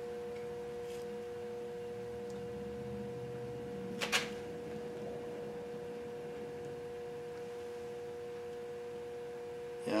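A steady electrical hum on one even pitch, with a few fainter overtones, and a single sharp click about four seconds in.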